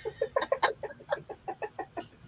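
A woman laughing: a quick run of about a dozen short pitched pulses that grow fainter.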